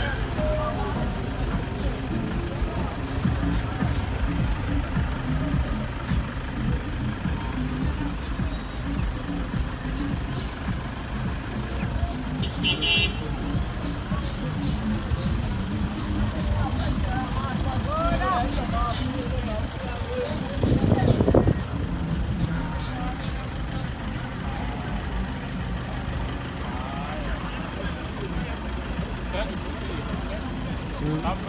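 Toyota HiAce minibus taxi engines running as the taxis roll slowly past, with voices and music mixed in. A short louder surge about twenty-one seconds in.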